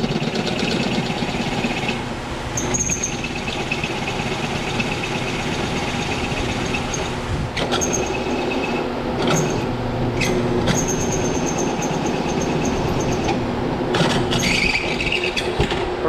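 12-speed bench drill press running, its dull bit pressed hard through a metal bar: a steady motor hum with an on-and-off high squeal from the cutting. Several sharp clicks come in the second half.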